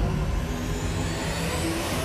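A dramatic soundtrack effect: a whooshing swell loudest right at the start, settling into a steady rumbling rush.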